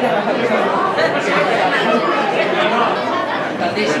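Many diners talking at once in a restaurant dining room: a steady babble of overlapping voices, with no single speaker standing out.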